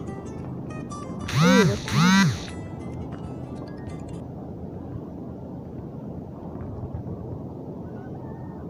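A person's voice: two short, loud calls a half-second apart about a second and a half in, each rising and then falling in pitch. They sound over a steady background noise, with faint high ticking in the first half.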